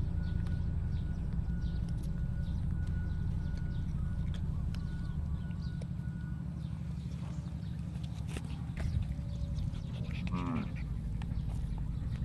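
A steady low outdoor rumble, with a faint steady high tone through the first half. About ten and a half seconds in comes one short, bleat-like animal call that rises and falls.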